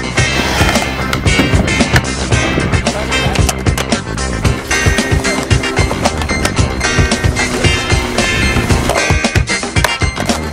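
Skateboard wheels rolling on the concrete of a skatepark bowl, mixed with a music track.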